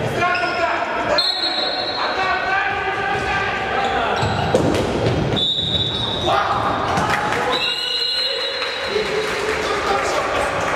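Music track in a bagpipe style: a melody of held high notes, each about half a second to a second long, over frequent short knocks.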